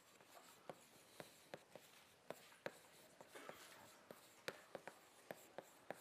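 Faint chalk writing on a blackboard: irregular sharp taps, roughly two a second, with a short scratch of the chalk a little past the middle.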